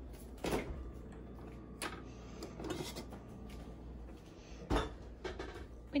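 A few separate soft knocks and clicks of household handling in a kitchen, such as a cupboard or refrigerator door and items being moved, over a faint steady hum.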